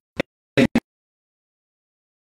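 Three brief, clipped fragments of a man's amplified voice in the first second, then dead digital silence: the audio feed cuts out.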